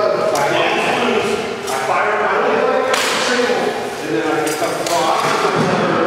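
Several people talking in an echoing hall, with a few sharp knocks, the loudest about three seconds in.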